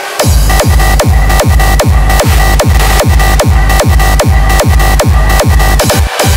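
Hardstyle electronic dance track. The beat comes back in just after the start, with a heavy kick drum hitting at a steady fast pace, each kick falling in pitch, under held synth notes.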